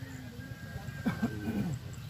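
A faint call with a bending pitch, about a second in, over a low steady outdoor rumble.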